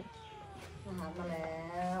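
Hungry domestic cats meowing for their food at feeding time. A faint falling meow comes first, then a drawn-out voice.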